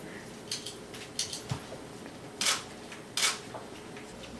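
Stuffed toys and clothing being handled and shifted on a table: a few short rustles, the two loudest about two and a half and three seconds in.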